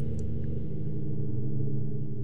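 Dark ambient background music: a low, steady drone of held tones.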